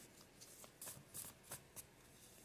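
Faint hand shuffling of a tarot deck: a string of soft, quick card flicks, several in two seconds.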